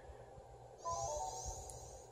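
A short electronic chime about a second in, a quick run of pure notes stepping down in pitch, with a faint high hiss over it, all above a low steady hum.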